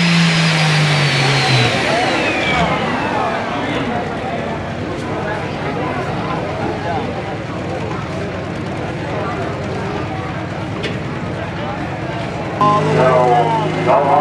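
Pro stock pulling tractor's turbocharged diesel engine, at full throttle at the end of a pull, is let off about a second and a half in. The engine note drops and the turbocharger's high whine winds down over the next two seconds, then the engine runs on at low speed.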